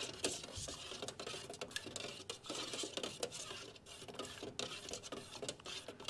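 A stir stick scraping and knocking around inside a metal can of enamel paint in a steady run of small irregular clicks. The paint is being stirred back up from the bottom, where it has settled out.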